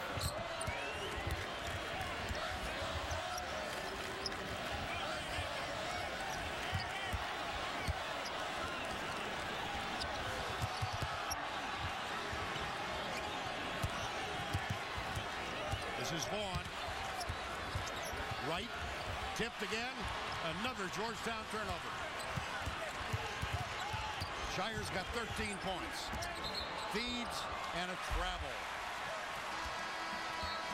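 A basketball being dribbled on a hardwood court, with short sneaker squeaks, over steady arena crowd noise during live play.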